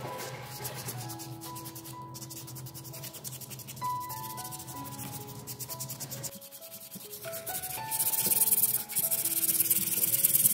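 Sandpaper rubbed by hand over a carved wooden spoon: a fast, even rasp of back-and-forth strokes. It grows much louder and harder from about eight seconds in.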